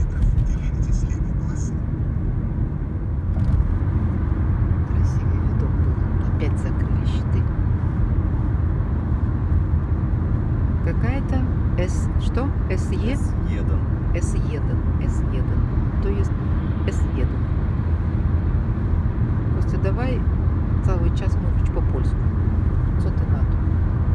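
Steady road and engine noise heard inside a car's cabin while driving at speed on a highway, a little louder a few seconds in.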